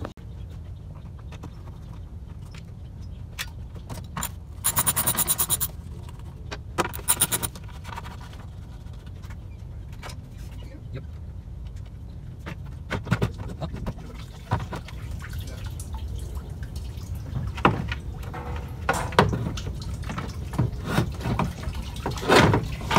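Hands and tools working the old radiator loose in a BMW E46's engine bay: a rapid rattling burst about five seconds in and a shorter one a couple of seconds later, then scattered clicks and knocks, over a steady low rumble.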